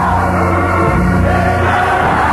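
Gospel choir singing over steady instrumental accompaniment with held bass notes, heard from an old radio broadcast recording.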